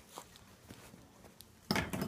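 Footsteps on loose wood-shaving bedding: a few soft steps, then a louder crunching rustle near the end.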